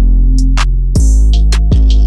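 Trap-style hip hop instrumental beat from a drum machine. Long, deep 808 bass notes, a new one starting about a second in, sit under sharp hi-hat and clap hits and a synth melody.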